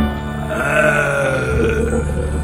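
Spooky electronic organ music with a drawn-out, croaking vocal groan over it from about half a second in, in the manner of a Frankenstein's-monster growl.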